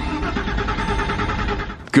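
Start attempt on a 1999 Porsche Boxster: the 2.5-litre flat-six turning over on the key, a steady mechanical churn that cuts off suddenly just before the end.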